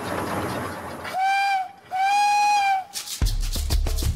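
Small steam locomotive running, then two blasts of its steam whistle, one steady pitch, the second blast a little longer. Background music with a low beat comes in about three seconds in.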